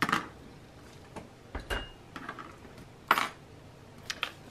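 Metal-bladed scissors set down with a clatter on a wooden tabletop, followed by a few light taps and clicks of small craft pieces being handled, with one sharp click about three seconds in the loudest.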